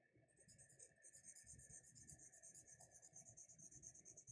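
Hard charcoal pencil shading on grey toned paper: faint, quick scratchy strokes, several a second, starting about half a second in.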